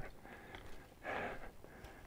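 A man's short, soft exhale close to the microphone about a second in, over faint quiet background.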